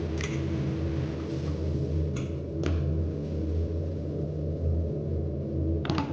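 A steady low hum with a few sharp, light clicks: a metal spoon knocking against a yogurt tub and a stainless steel mixing bowl as thick yogurt is scooped into a marinade.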